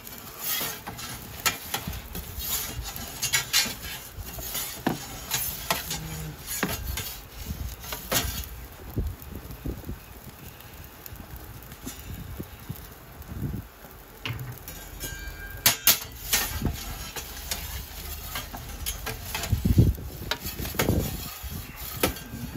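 Perforated metal pizza peel clicking and scraping against the stone floor and steel mouth of a pizza oven as the pizza is turned, in irregular clinks and knocks. Under it, a low rumble of wind on the microphone.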